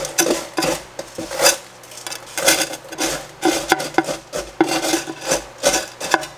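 Rinsed pumice gravel scooped up and poured from a substrate scooper into a glass aquarium, the small stones crunching and rattling against each other and the glass in a quick, irregular run of pours.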